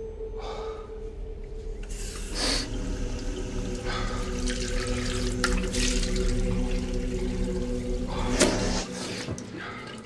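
Water running from a tap into a washbasin and splashing as a man washes his face with his hands, with louder splashes about two and a half seconds in and again near the end. A steady low hum sits underneath.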